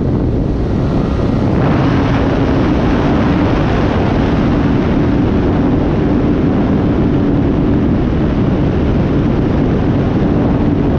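Onboard sound of an E-flite Night Timber X RC plane in flight: its electric motor and propeller giving a steady whine over heavy wind buffeting on the camera's microphone. The motor eases off briefly near the start and picks back up about one and a half seconds in, then holds steady.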